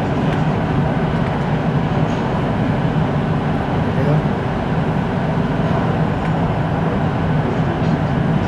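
Siemens Inspiro metro train running at speed through a tunnel, heard from inside the car: a steady rumble of wheels on rail and running gear.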